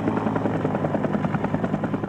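Helicopter in flight, its rotor beating in a steady, fast pulse.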